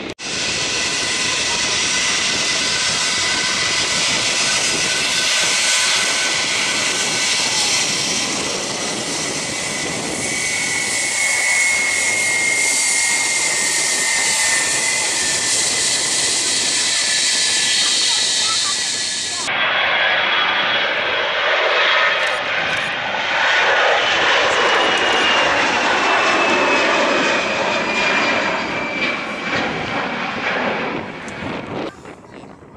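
Airbus A321's jet engines at take-off power on the runway: a steady loud rush with a high whine that slides slowly down in pitch as the airliner passes. After a cut about two-thirds of the way through, a second jet airliner is heard climbing away, its whine again gliding slowly lower.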